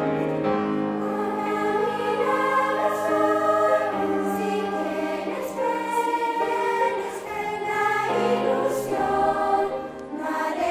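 A children's girls' choir singing together, in a continuous line of changing notes.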